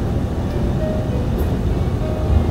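Steady low engine and road rumble inside a semi-truck cab cruising at highway speed.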